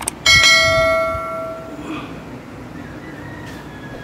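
A single bell-like chime sound effect: a short click, then one struck, ringing tone that fades out over about a second and a half.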